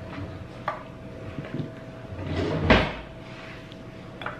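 Small clicks and handling noises as straws are put into a plastic tumbler of smoothie on a kitchen counter, with a louder rustle building to a sharp thump about two-thirds of the way through. A faint steady hum runs underneath.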